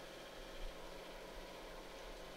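Faint steady hiss with a low hum from an open commentary microphone.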